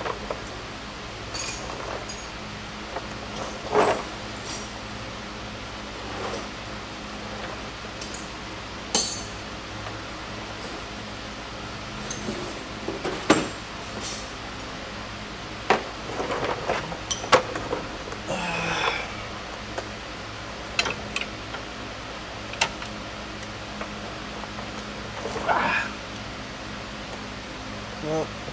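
Hand tools clinking and knocking against metal under a car, about a dozen sharp clinks scattered irregularly, as a half-inch drive tool is worked onto the serpentine belt tensioner. A steady low hum runs underneath.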